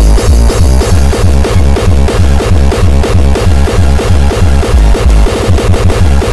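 Loud electronic dance music with a heavy, pulsing bass beat that repeats evenly, played as a bass-boosted car mixtape track.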